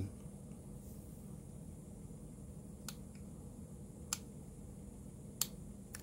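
Three sharp, separate clicks over a second apart, over a faint steady electrical hum.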